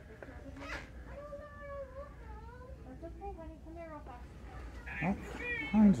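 A high, wavering, voice-like call lasting about three seconds, its pitch sliding up and down, followed near the end by a person's short voiced sounds.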